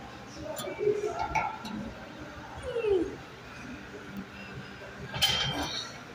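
Short, indistinct human vocal sounds, among them one falling, whine-like voice sound about three seconds in, and a brief noisy burst near the end.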